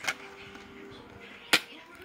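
Two sharp plastic clicks, one just after the start and a louder one about one and a half seconds in, as a CD or DVD case is handled.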